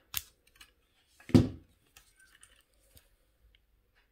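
A short sharp click of flush cutters snipping off the fine weaving wire, then a louder brief knock about a second later, followed by a few faint handling clicks.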